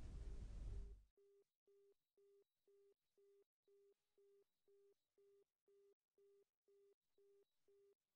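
Near silence with a very faint electronic tone beeping evenly, about two short beeps a second, like a telephone busy signal.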